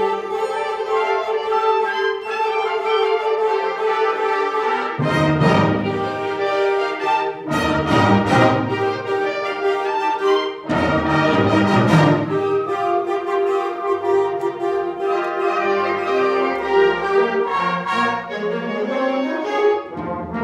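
Student concert band of woodwinds and brass playing sustained chords, with a few loud strikes that ring on, partway through.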